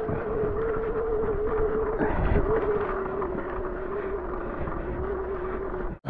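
Mountain bike rolling along a wet trail: a steady, slightly wavering mid-pitched tone runs over tyre rumble and wind noise on the microphone.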